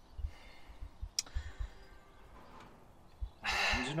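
Low, irregular rumble on the microphone with a single sharp click about a second in, then a loud breathy exhale near the end, just before speech.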